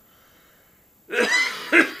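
A man coughing into his fist: a quiet first second, then two hard coughs in quick succession.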